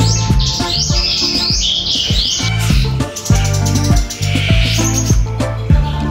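Background music with a steady beat and bass line, with caged songbirds chirping and singing in quick high runs over it, densest in the first two seconds or so and again about two-thirds of the way in.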